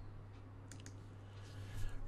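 Quiet room tone with a low steady hum, and two or three faint short clicks a little under a second in.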